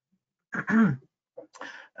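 A man clears his throat about half a second in: a short voiced sound, then a rougher, breathier one.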